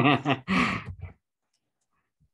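A voice trails off, then one breathy sigh of about half a second.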